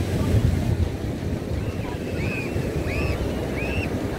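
Ocean surf breaking on a sandy beach, with wind buffeting the microphone as a steady low rumble. A few faint, short high-pitched calls sound in the background in the second half.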